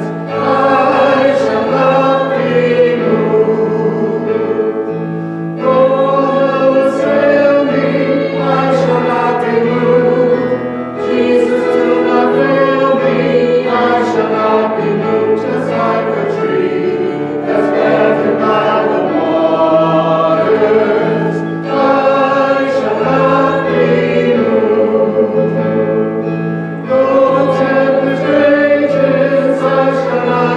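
Small church choir singing, in long sustained phrases with brief breaks between them.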